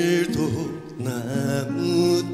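Male voice singing a slow Korean trot song over band accompaniment, with a short gap between sung phrases about a second in.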